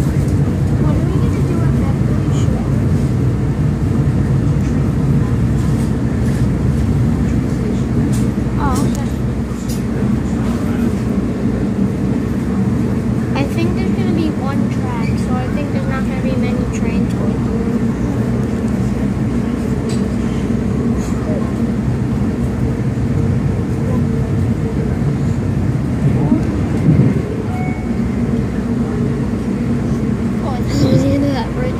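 Steady rumble of a moving South Shore Line electric commuter train heard from inside the passenger car, with faint passenger voices at times in the background.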